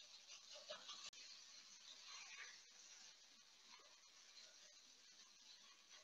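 Near silence: a faint sizzle of turkey mince frying in a pan, with a few soft scrapes from the spatula breaking it up in the first couple of seconds.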